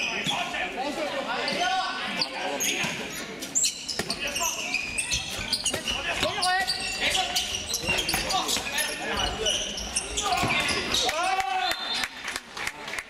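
Handball bouncing and slapping on a sports hall floor as players dribble and pass, mixed with many short knocks and voices calling out throughout, in an echoing hall.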